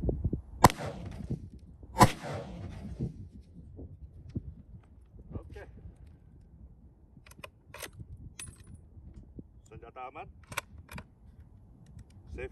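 Scoped rifle firing: two sharp, loud reports about a second and a half apart, then a few faint clicks later on.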